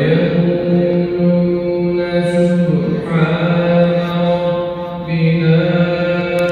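A man's solo voice reciting the Quran in a melodic, chanted style, holding long notes that step to a new pitch about three seconds in and again near five seconds.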